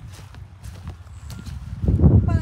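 Footsteps walking on soft earth: dull, low thuds in a steady walking rhythm, getting louder near the end.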